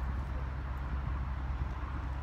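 Low, steady outdoor rumble with no distinct event.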